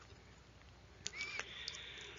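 A single sharp click about a second in, then a faint hiss lasting about a second: a mouse click advancing a presentation slide.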